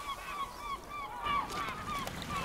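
Birds calling: a quick run of short repeated calls, several a second, each rising and falling in pitch.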